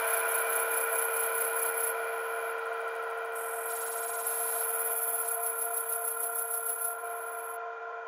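Breakdown in a dark psytrance track: the kick drum and bass drop out, leaving a held synthesizer drone of several steady tones with a high hissing texture on top, slowly fading.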